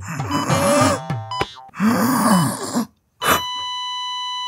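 Electronic game sounds from a phone, tones that wobble and arch up and down in pitch with small clicks. Near the end, after a brief break, a patient monitor starts one long unbroken beep, a flatline tone.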